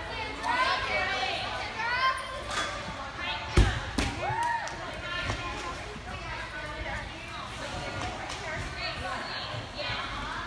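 A heavy thump about three and a half seconds in, followed half a second later by a lighter knock, from a gymnast working the uneven bars. Voices carry on in the background of the large gym hall.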